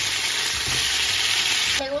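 Pre-cooked chicken drumsticks coated in red chile mole sizzling steadily as they are laid into hot oil in a frying pan to brown. The sizzle cuts off abruptly near the end.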